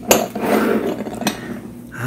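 Small ceramic bowls knocking and scraping against each other as they are nested into a stack on a table, with a sharp knock right at the start and another just over a second in.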